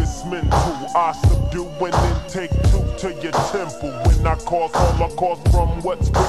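Slowed-down, chopped-and-screwed hip hop: a rap vocal over a heavy bass beat that hits roughly once every 0.7 seconds.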